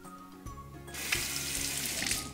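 Tap water running into a sink for about a second, starting about a second in and stopping at the end, as the cartridge razor is rinsed under it.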